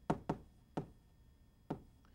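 Chalk on a chalkboard during handwriting: a few sharp, irregular taps as each letter is struck onto the board.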